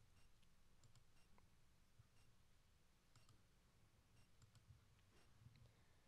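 Near silence, with faint irregular button clicks as the slide controls are pressed repeatedly.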